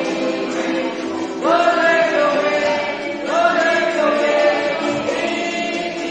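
A small group singing a hymn together, accompanied by strummed ukuleles. Two long sung notes begin with an upward slide, about a second and a half and about three seconds in.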